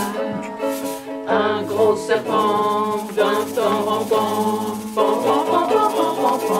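Women's voices singing a French children's nursery rhyme together, accompanied by a strummed ukulele, with a hand shaker rattling along.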